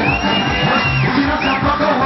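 Loud live concert music over the PA, with a steady bass beat about three times a second and crowd noise underneath. A high held tone sounds for about a second near the start.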